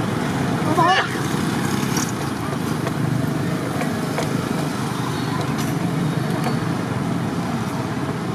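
Steady outdoor hubbub of distant voices over a low rumble. A brief high, wavering squeal comes about a second in.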